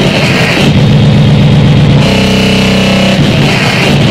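Harsh noise music: a loud, dense wall of distorted electronic noise. About two seconds in, a buzzing pitched tone with many overtones cuts through for about a second before the noise closes back over it.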